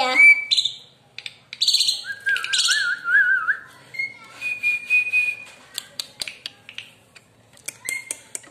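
A person whistling to a caged songbird, a short wavering whistle followed by a held high note, mixed with quick high chirps. Light clicks and taps come near the end as a small cup is fitted into the metal cage bars.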